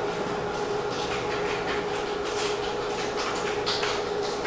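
A thin ear pick scraping and rustling inside an ear canal in short, irregular scratchy strokes, a few per second, over a steady background hum.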